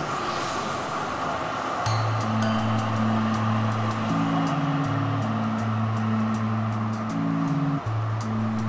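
Background music: held low notes, entering about two seconds in and stepping in pitch every second or so, with a quick ticking beat high up, over a steady noisy wash of city ambience.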